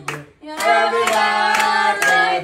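A group of people singing a birthday song together, clapping in time about twice a second. The singing breaks off briefly about a third of a second in, then comes back fuller.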